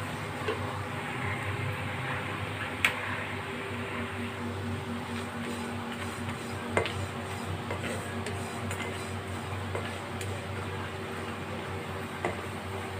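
Plastic spatula stirring peanuts and sesame seeds dry-roasting in a nonstick kadai: a steady scraping rustle of the seeds across the pan with a few sharper clicks, over a low steady hum.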